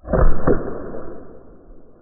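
Byrna SD CO2-powered launcher firing a .68 caliber Eco Kinetic practice round that bursts into powder against the target board: a sudden loud report, a second sharp hit about half a second later, then a tail fading over a second or so.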